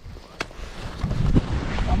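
Wind buffeting the microphone, swelling into a loud low rumble about a second in, after a single sharp knock just under half a second in.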